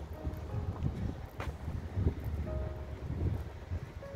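Outdoor street sound of wind buffeting a phone microphone over a low traffic rumble, with a single sharp click about a second and a half in.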